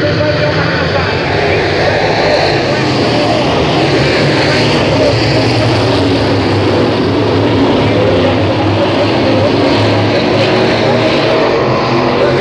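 A pack of Sportsman dirt late models with 602 crate V8 engines racing together, a loud, steady, unbroken engine drone from the whole field.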